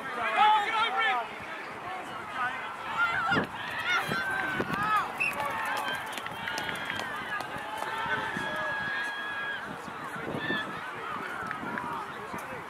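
Distant shouts and calls of rugby players and sideline spectators on an open pitch, several voices overlapping.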